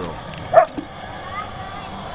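A dog barks once, a single short bark about half a second in.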